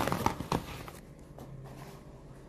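A few sharp knocks and clicks in the first half second, from objects being picked up and handled close to the microphone, then only a faint low hum.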